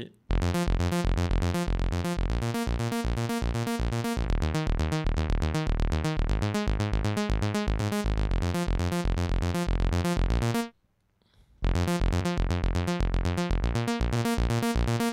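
Native Instruments Monark, a Minimoog-style software synthesizer, playing a fast sequenced pattern of short, bright, bass-heavy notes with some grit. It stops for about a second near the end, then the loop starts again.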